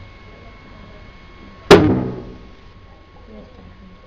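One hard hand blow to the side of a CRT television's cabinet about two seconds in: a sharp thump that dies away over about half a second. It is a knock meant to jolt a faulty set that shows only a purple screen back to a proper picture.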